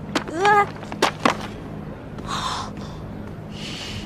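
A person's short wordless vocal sound, rising then falling in pitch, with a few sharp clicks, followed by two breathy gasps, over a low steady hum.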